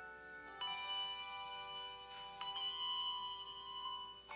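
Handbell choir ringing chords of handbells that sustain and overlap; fresh chords are struck about half a second in and again about two and a half seconds in.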